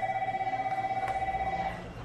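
A phone-like electronic ring: one steady high tone pulsing rapidly, lasting about two seconds and then stopping.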